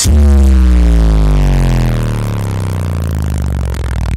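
Bass-heavy electronic music played loud through a wall of twelve Hertz SPL Show 12-inch subwoofers: one long, deep bass note starts sharply and slides slowly down in pitch, fading a little as it goes.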